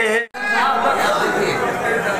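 A man's sung poetry recitation is cut off abruptly about a quarter second in, with a brief dropout to silence. After that come indistinct voices and chatter echoing in a large hall.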